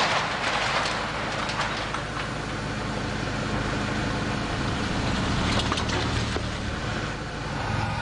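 Car engine idling steadily, while a wrought-iron gate is swung open with a few scrapes and clanks.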